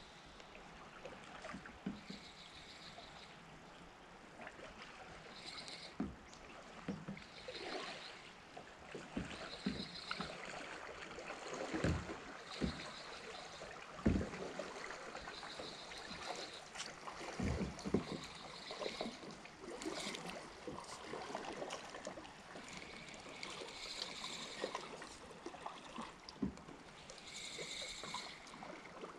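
Creek ambience: a steady wash of moving water with scattered knocks and thumps, loudest around the middle, and a short high chirp that recurs every two or three seconds.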